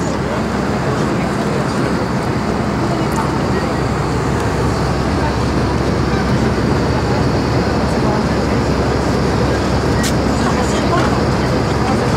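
Steady cabin noise of a moving passenger vehicle: an even drone with a low hum underneath, holding at one level throughout.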